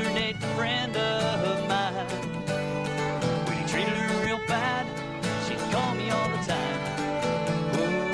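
A live acoustic country-rock duo playing: strummed acoustic guitar with a fiddle playing over it.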